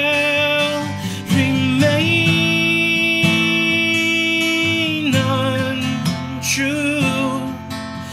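A man singing over a strummed steel-string acoustic guitar, holding one long wavering note for about three seconds in the middle.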